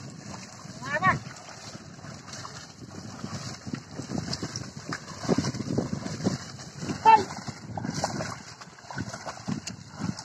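Bullocks' hooves and a dragged leveller squelching and sloshing through wet paddy mud and standing water, in a continuous irregular churn. Short vocal calls cut in about a second in and, loudest, about seven seconds in.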